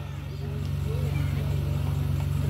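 A steady low engine hum with a fast, even pulse, growing slightly louder, under faint distant voices.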